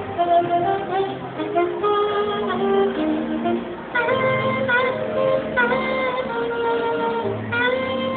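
Live smooth-jazz instrumental: a saxophone plays the melody over keyboard accompaniment. From about halfway through, several sax notes scoop and bend into pitch.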